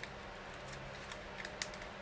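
A few faint clicks and light taps from paper-craft materials and tools being handled on a desk, over a low steady hum.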